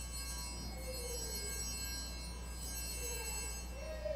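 Altar bells ringing at the elevation of the consecrated host, a cluster of high bright tones that fades away near the end, over a steady low hum.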